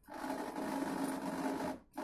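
Corded electric drill motor running steadily for nearly two seconds, stopping briefly near the end, then starting again.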